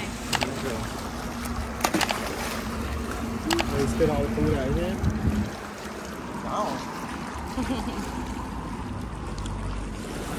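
Small waves lapping and splashing over shoreline rocks, with a few sharp knocks and a steady low hum through the first half that stops about halfway through.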